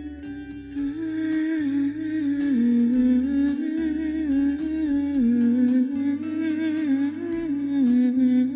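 Background score with a slow, wordless hummed melody over sustained low chords.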